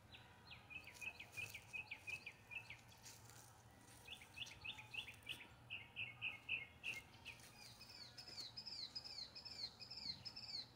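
Songbirds chirping faintly in quick runs of short notes, about five a second, in three bouts. The last bout, near the end, is higher and made of down-slurred notes.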